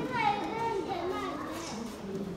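Children's voices and other speech talking and calling out over one another, several voices at once.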